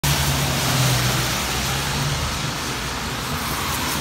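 Road traffic on a wet street: tyres hissing on the wet pavement under a steady low engine hum, which eases off about two seconds in.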